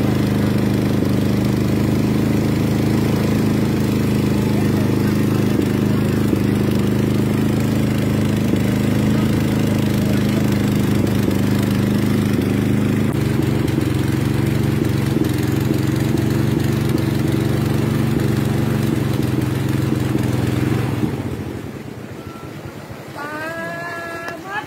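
Motorboat engine running steadily at an even speed. It falls away suddenly near the end, where a voice comes in.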